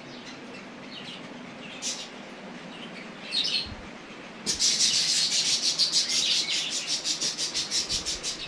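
Small birds chirping: a few isolated chirps at first, then from about halfway a loud, rapid run of high chirps that goes on without pause.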